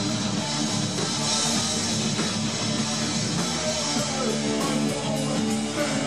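Hardcore punk band playing live and loud: distorted electric guitar riffing over drums, with sharp cymbal and drum hits in the last second or so.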